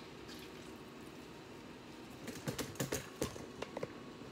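Light, irregular clicks and taps of kitchen handling at a counter, in a quick run through the second half, while a lemon is handled over a wooden cutting board; before that only faint room hiss.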